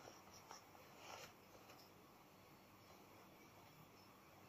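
Near silence: room tone, with two faint, brief rustles in the first second or so.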